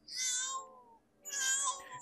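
A newborn baby crying, from the anime episode's soundtrack: two short, high-pitched wails about a second apart.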